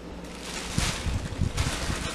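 Rustling and handling noise in two swells about a second apart, with a few soft low bumps, as a person shifts and leans forward on a couch.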